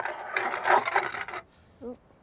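Scraping across the stone floor of a hearth bread oven as loaves are loaded in. It stops about a second and a half in.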